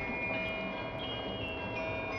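Maastricht town hall carillon playing a melody: bells struck one after another about every half second, each note ringing on under the next.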